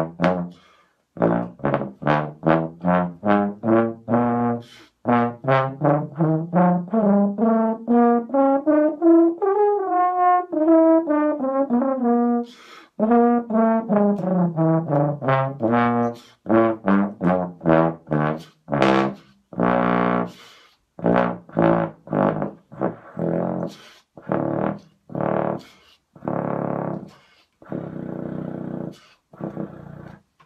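BBb/F contrabass trombone played with a Denis Wick 0AL bass trombone mouthpiece. It plays quick separate notes, then a smooth run that climbs and falls back in the middle, then longer held notes, a little quieter toward the end. The notes sound a lot thinner and the instrument loses the bottom of its range, because the mouthpiece is too small for it.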